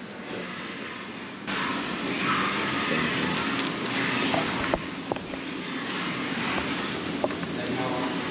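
Steady indoor background noise with indistinct voices, growing louder about a second and a half in, with a few light clicks.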